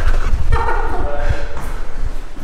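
A person's voice speaking briefly over repeated low thuds of footsteps going down stairs.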